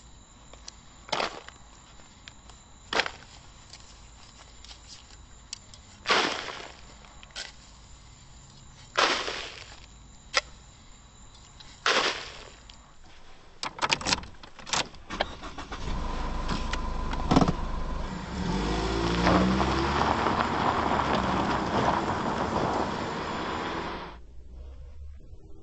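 Shovelfuls of soil thrown into a grave, a loud scrape-and-fall about every three seconds, five times. Then a quick run of clicks like keys and a car door, and a car engine starting and running steadily from about two-thirds of the way in.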